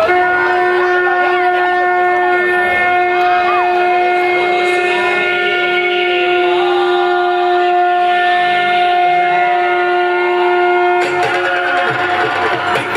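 One long, steady, horn-like note is held at a single pitch for about eleven seconds and stops abruptly. Music then starts as the opening of the dance track. Faint crowd chatter runs underneath.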